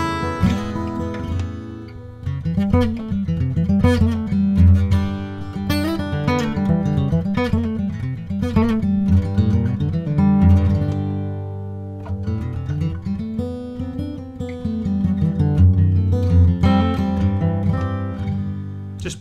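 Collings D1AT dreadnought acoustic guitar played solo, a flowing passage of picked chords and single notes over bass notes, with a few sliding notes; a full, traditional dreadnought sound.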